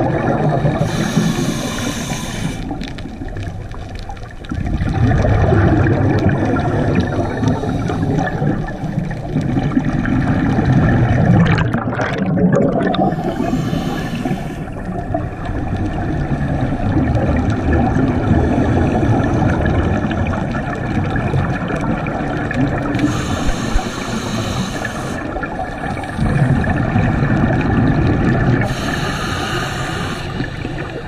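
Scuba diver breathing underwater through a regulator: long rumbling bursts of exhaled bubbles, with four brief hisses of about two seconds each, heard through an underwater camera housing.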